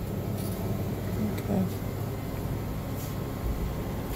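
Shopping cart being pushed along a store aisle: a steady low rumble with a faint hum.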